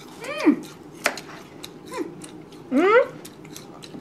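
Short wordless vocal cries that slide in pitch: a steeply falling one near the start, a brief one about two seconds in, and a rising one near the end. About a second in there is one sharp click, such as a knife meeting a plastic cutting board.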